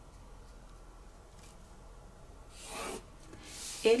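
A plastic pattern-making ruler and pen rubbing on paper: two short swishes in the last second and a half, as a line is drawn along the ruler and the ruler is slid across the sheet.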